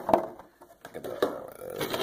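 Hard plastic toy car being handled and set down on a wooden table: a knock just after the start, then light clicks and scrapes as fingers move it.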